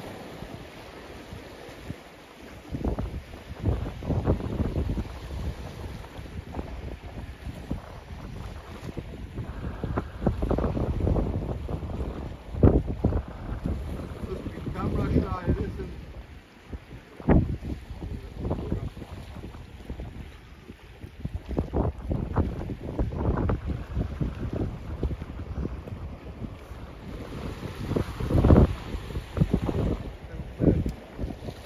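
Wind buffeting the microphone in irregular gusts, strongest about a third of the way in, again past halfway, and near the end, over a light wash of the sea against the rocks.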